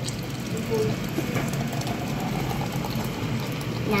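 Thick blended watermelon juice pouring steadily from a blender jug into a glass pitcher over ice.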